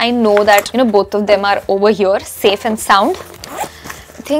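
A zipper on a small fabric pouch being pulled open, under a woman's talking.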